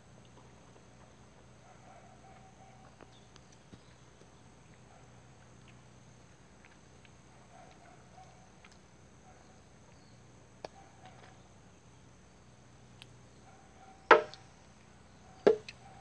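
A man eating fresh fruit: a few faint clicks over a low steady background, then two sharp mouth smacks about a second and a half apart near the end.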